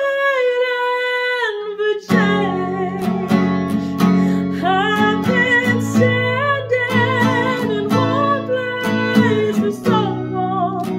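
A woman singing with a strummed acoustic guitar. She holds a long note that slides down while the guitar drops out, and the strumming comes back in about two seconds in.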